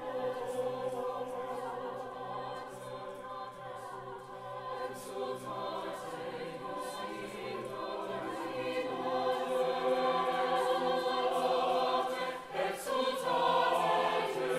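Mixed choir singing sustained chords, growing louder through the second half, with a brief break shortly before the end followed by a loud entry.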